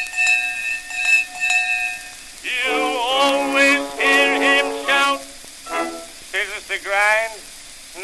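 A hand bell struck about three times in the first two seconds, its tone ringing on, on an early acoustic phonograph recording. Then the accompaniment and a man's voice carry on.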